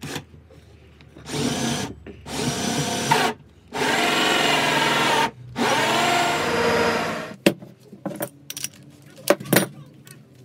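Cordless drill cutting into a wooden board with a hole saw, run in four bursts of one to two seconds each. It is followed near the end by a few short sharp clicks and knocks.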